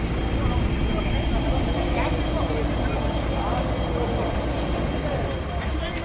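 JCB backhoe loader's diesel engine running steadily, with people talking faintly in the background.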